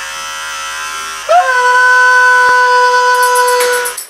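Electric hair clippers switched on and buzzing steadily. About a second in, a much louder held tone swoops briefly and then holds one pitch, stopping shortly before the end.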